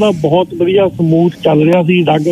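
A man talking continuously, his voice thin and cut off at the top as over a telephone line.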